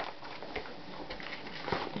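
Faint rustling with a few light knocks as a vinyl LP's gatefold jacket and clear plastic sleeve are handled.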